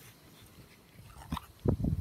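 A person drinking juice from a paper cup close to the microphone: quiet at first, then a few loud, low gulps near the end.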